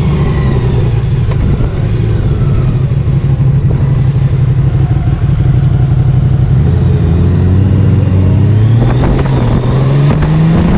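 Honda Gold Wing's flat-six engine running steadily at low speed, then pulling away with its pitch rising from about two-thirds in.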